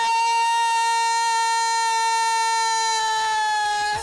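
A woman's singing voice holding one long high note, steady in pitch and loudness, dipping slightly in pitch just before it stops near the end.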